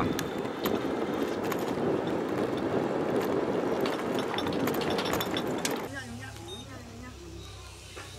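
Wind rushing over the microphone and road noise from an electric three-wheeler being ridden on a concrete road, with many small clicks and rattles. It cuts off suddenly about six seconds in, leaving a much quieter open-air background.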